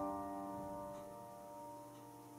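Soft background piano music: a chord struck just before rings on and slowly fades away.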